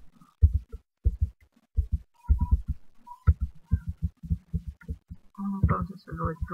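Computer keyboard being typed on, heard through the microphone as a rapid, irregular run of dull low thuds. A voice begins briefly near the end.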